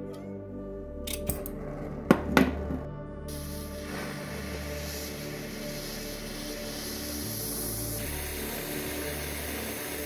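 A gas torch being lit: two sharp clicks a little after two seconds in, then the steady hiss of the burning flame, over background music.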